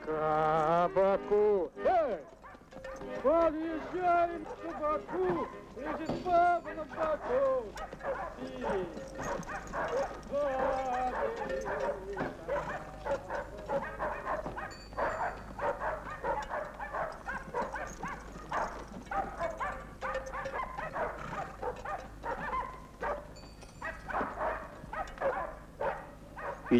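A button accordion playing a tune that stops about two seconds in. It gives way to dogs barking and yelping, indistinct voices and the hooves of a horse caravan moving along.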